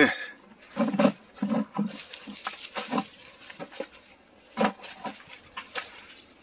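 Footsteps crunching and rustling through dry leaf litter and undergrowth, in an uneven walking rhythm.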